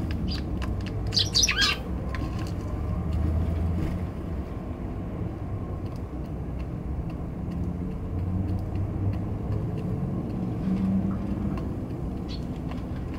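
Eurasian tree sparrows chirping in a short burst of quick calls about a second in, over a steady low rumble of distant traffic, with scattered faint ticks.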